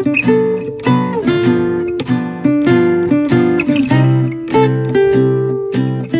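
Background music: an acoustic guitar playing plucked notes and chords, about two a second, at a steady level.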